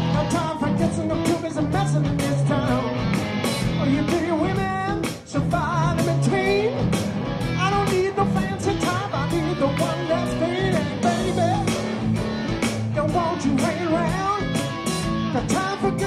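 Live rock band playing a blues-rock song: a man singing lead over electric guitars, bass and drums, with a steady drum beat and a brief break about five seconds in.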